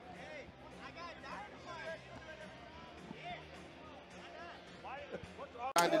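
Faint arena background during a fight replay: scattered shouts and voices from cageside, over faint background music. A commentator's voice cuts in loudly near the end.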